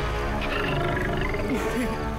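A tiger's roar over background music.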